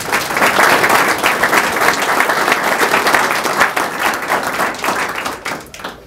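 A group of people applauding, a dense patter of hand claps that dies away near the end.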